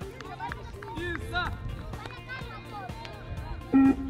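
Children's voices calling out and cheering over background music, with a short beep from the 20-metre shuttle run's pre-recorded pacing signal near the end.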